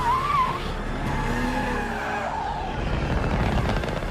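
Cars speeding in a street chase, their engines running under a steady low rumble, with a wavering tyre squeal near the start and fainter squeals a little after the middle.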